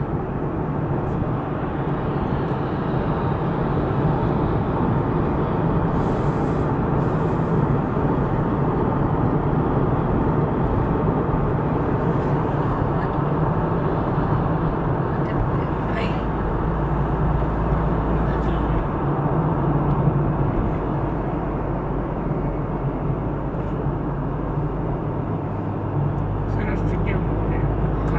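Steady road noise inside a moving car's cabin: tyres on asphalt and the engine's low hum at road speed.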